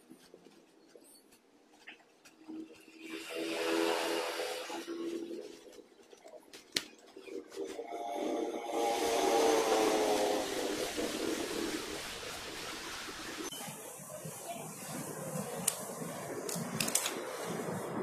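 Engines of passing motor vehicles, swelling and fading twice. Light clicks and rustles of handling follow near the end.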